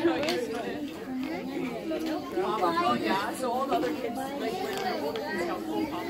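Many children and adults chattering at once, the voices overlapping into a steady babble with no single voice clear.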